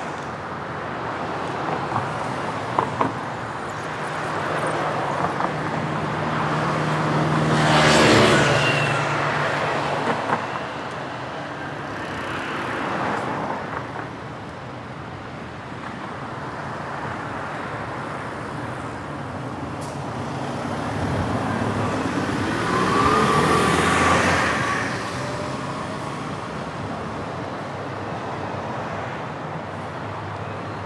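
Road traffic on a city street. A vehicle goes past loudly about eight seconds in. Around twenty-two seconds in, another engine passes with its pitch rising, over a steady background of traffic noise.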